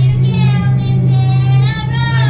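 A child-like voice singing a lullaby in long drawn-out notes that slide slowly in pitch, over a loud steady low hum, played as a haunted-maze soundtrack.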